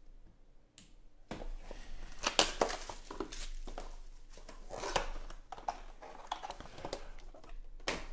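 Crinkling, rustling and tearing of a sealed trading-card box's wrapping and cardboard as it is opened by hand, with sharp clicks from handling the box and case. It starts about a second in and goes on in bursts, sharpest at about two and a half and five seconds.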